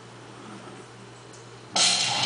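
A quiet room with a faint steady hum, then dance music starts abruptly near the end.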